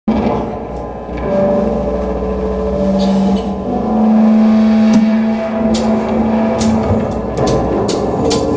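Amplified electric guitars and bass playing a song's opening: long held notes ringing over a low drone, loud, with a few sharp strikes in the second half.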